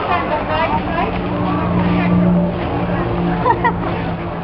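Busy street ambience: many voices chattering, with a vehicle engine humming steadily underneath.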